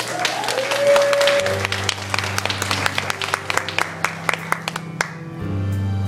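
Audience applauding, fading out after about five seconds, as the song's instrumental intro begins under it with low held notes about one and a half seconds in, becoming fuller near the end.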